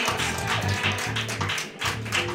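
Live band playing with a pulsing low bass line and regular drum hits.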